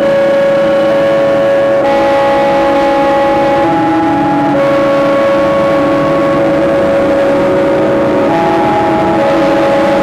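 Live electronic drone music: layered sustained tones over a steady noisy hum, with the held pitches shifting to new notes every couple of seconds.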